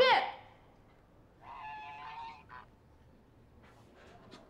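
A goose in a bamboo basket honking: one drawn-out nasal call about a second and a half in, then a brief second call.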